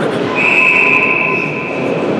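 Referee's whistle blown once in one steady, shrill blast of about a second, starting a moment in, stopping play, over the murmur of an arena crowd.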